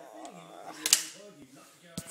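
A person's voice in the background, broken by a sharp click or knock about a second in and another at the very end.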